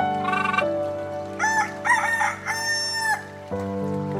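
Rooster crowing once, a cock-a-doodle-doo starting about a second and a half in and ending on a long held note, over steady background music.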